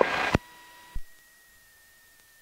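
The tail of a radio voice call heard through the aircraft's intercom, then a brief hiss with a steady tone that cuts off with a click about a second in. After that, near silence with a faint, thin, steady high whine; no engine is heard.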